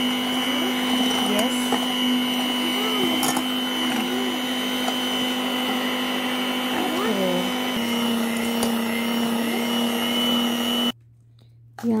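Electric hand mixer running steadily with a high whine, its beaters whisking egg whites as sugar is spooned in. It shuts off suddenly about a second before the end.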